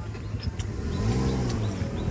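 A road vehicle's engine passing, its note rising and then falling over about a second midway through, over a steady low hum.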